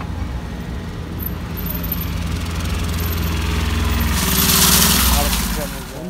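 Two small motorbikes coming up the slushy street, their engine hum growing louder as they approach, with a loud rushing hiss as they pass close about four to five seconds in.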